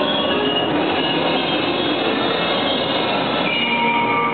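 Percussion ensemble playing a loud, dense wash of many overlapping sustained high tones over a noisy bed, with no clear beat; the texture thins slightly near the end.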